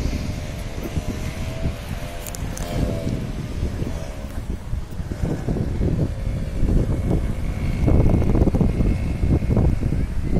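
Wind buffeting the phone's microphone in gusts, with a low rumble that grows stronger near the end. A faint wavering hum sits under it during the first few seconds.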